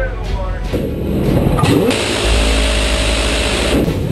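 Gunfire at sea: a few sharp shots in the first moments. After a sudden change, a loud steady roar runs from about a second and a half in until just before the end.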